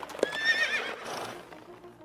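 A horse whinnying: one quavering call about a third of a second in, lasting under a second and trailing off, with a hoof clop just before it.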